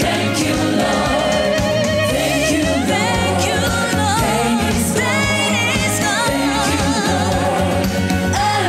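Gospel song: a solo voice sings with vibrato over backing music with a moving bass line.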